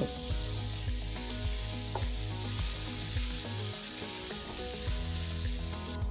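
Soaked basmati rice sizzling in a hot pan of butter and masala as it is stirred with a wooden spatula, a steady hiss. Background music plays underneath.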